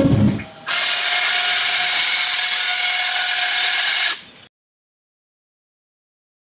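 Music breaks off, then a steady, high-pitched whirring noise runs for about three and a half seconds and cuts off suddenly.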